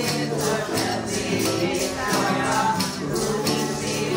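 A group of women's voices singing together with a steady strummed acoustic guitar and banjo accompaniment.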